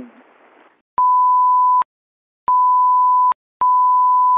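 Three steady censor bleeps, each a single high pure tone just under a second long, with dead silence between them. They mask the rest of a phone number being read out.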